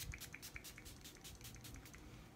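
Rapid, faint spritzes from a pump facial mist bottle, a Tatcha Luminous Dewy Skin Mist, sprayed onto the face: about seven short hisses a second, dying away in the second half.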